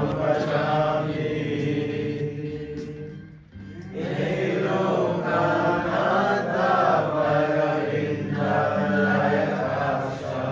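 Devotional chanting with music: long, melodic sung phrases, breaking off briefly about three and a half seconds in before the next phrase begins.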